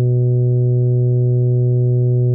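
Computer-played tuba from sheet-music playback, holding one long, low, steady note (a whole note).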